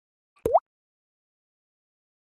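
A single short 'bloop' pop sound effect that sweeps quickly upward in pitch, about half a second in.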